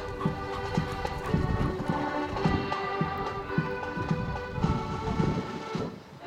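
Marching accordion band playing a tune, the accordions holding chords over a steady beat about twice a second; the music drops away just before the end.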